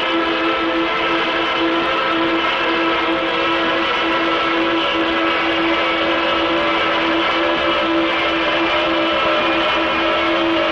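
Steady, unbroken drone of the giant bomber's propeller engines, a cartoon sound effect held at one pitch.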